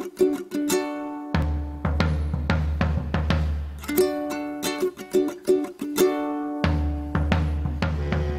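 Instrumental music: a ukulele strums a repeating pattern, joined about a second in by a deep drum struck with soft mallets. The drum drops out at about four seconds and comes back near seven.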